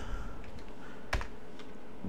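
A keystroke on a computer keyboard: one sharp click about a second in, with a few much fainter taps over a low steady hiss.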